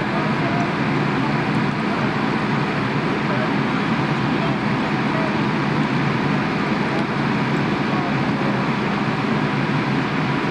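A parked fire engine's engine and pump running steadily, a continuous, even drone with no change in pitch or level, with indistinct voices mixed in.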